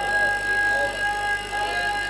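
A man's voice over a public-address system, melodic rather than plainly spoken, with a steady high-pitched tone underneath it.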